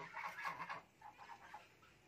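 Faint, scattered honks of domestic geese, fading out after the first second and a half.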